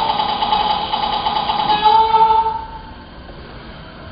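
A loud, horn-like chord of several held notes, played from a video soundtrack over the hall's speakers. It stops about two and a half seconds in, leaving quiet room noise.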